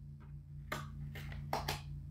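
Thick cardboard pages of a board book being handled and turned, giving a few short soft taps and clicks, over a steady low hum.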